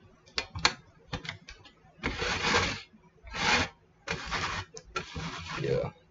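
Hand-handled small mechanism: a few sharp clicks, then four rasping, grinding strokes of under a second each.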